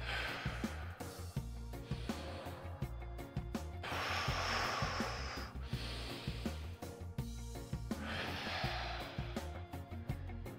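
Background music with a steady beat, over a man's heavy breathing as he holds a wall sit: four long, forceful exhalations, the longest about four seconds in.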